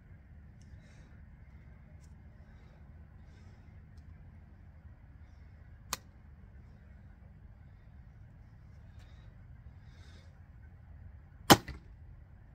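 Samick Sage recurve bow shot: the string is released with a loud sharp snap near the end, followed at once by a smaller knock. A single short click sounds about halfway through, during the nock and draw.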